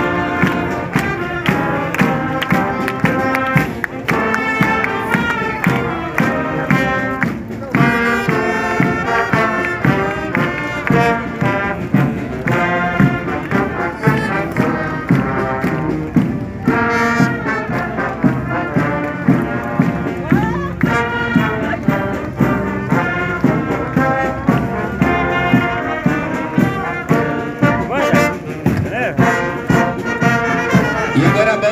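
Brass band playing a tune with a steady beat, trombones and trumpets carrying the melody.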